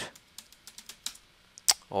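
Computer keyboard typing: a run of separate keystrokes at an uneven pace, with one sharper, louder key press near the end.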